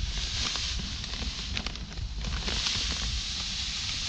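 Granular fertilizer poured from a bag into a plastic broadcast spreader hopper: a steady hiss of granules running, with the bag rustling and a few faint ticks.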